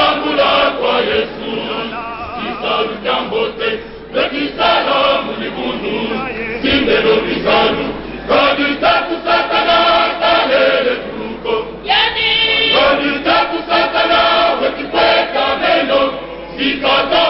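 A male choir singing unaccompanied, with a lead voice singing out in front of the group.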